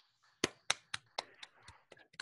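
Hands clapping in applause, about four claps a second, growing fainter toward the end.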